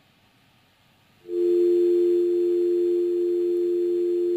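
Near silence for about a second, then a steady two-note telephone dial tone comes on the line: the phone link to the reporter is not connected, and his voice is not coming through.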